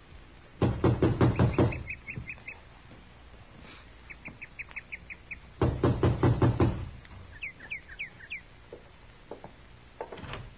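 Sound effect of knocking on a door: two rounds of quick raps about five seconds apart, with short bird chirps in between.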